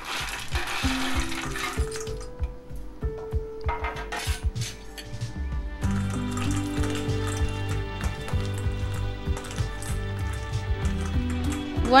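Ice cubes clattering into a stainless-steel bowl of peas, then clinking against each other and the bowl as a spoon stirs them. Background music with held notes plays underneath, fuller with a bass line from about halfway.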